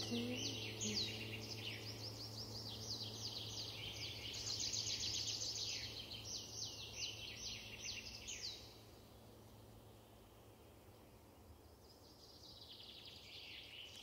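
Small songbirds singing: quick runs of high, repeated chirps that fall in pitch, overlapping for the first nine seconds or so, then a quieter gap and another short burst near the end.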